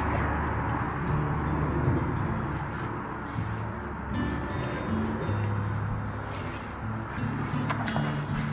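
Soft background music with held low notes that change every second or so.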